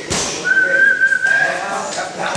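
A single whistled note, held steady for about a second with a slight rise in pitch.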